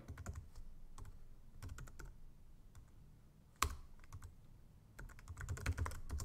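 Typing on a computer keyboard: irregular key clicks, sparse in the middle, with one sharper, louder click about three and a half seconds in and a quicker run of clicks near the end.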